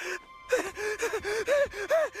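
Panicked hyperventilating: a teenage boy's rapid, short voiced gasps, about five a second, starting about half a second in.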